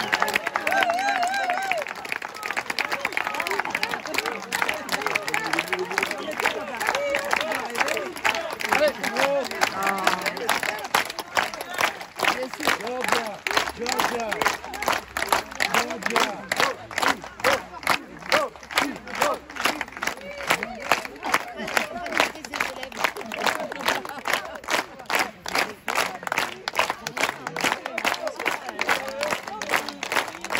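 Concert audience applauding, cheering and shouting at first, then settling into rhythmic clapping in unison to a steady beat.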